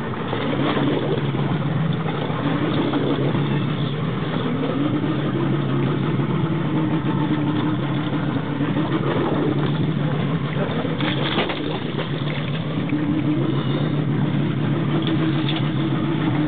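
Boat motor idling steadily, its pitch wavering slightly, with a brief clatter about eleven seconds in.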